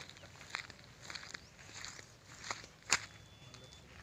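Footsteps on dry grass and loose stones, an irregular series of scuffs and clicks. A single sharp snap just before three seconds in is the loudest sound.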